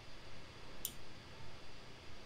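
A single short, sharp click a little under a second in, over faint steady background hiss.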